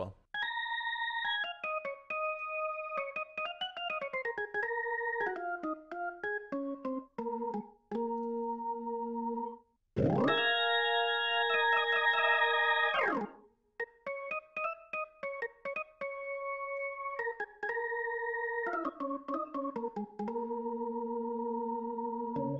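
Deep-sampled B2–B3 hybrid Hammond organ heard through a Leslie cabinet, played as a sample library through a sampled Bricasti reverb. It plays a winding single-note line, then a loud held chord about ten seconds in for about three seconds, then single notes again.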